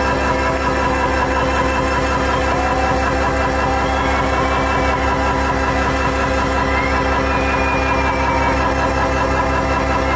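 Loud live synth-pop music through a club PA: held synthesizer chords over a fast pulsing bass beat.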